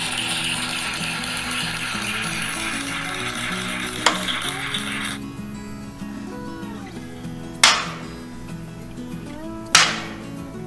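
Thrown knives striking a target board over background music: a light knock about four seconds in, then two loud, sharp hits about two seconds apart near the end. A hissing layer in the music stops suddenly about halfway through.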